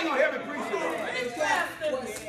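Speech only: a man preaching, with several voices at once.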